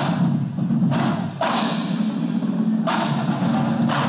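College marching-band drumline playing a drum cadence on snare drums and bass drums: dense, continuous sticking with strong accented hits roughly every second or so.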